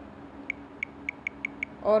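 A quick run of about six short, sharp ticks, roughly five a second: the phone's touch-feedback sound as the screen's undo button is tapped again and again, each tap removing a drawn pen stroke.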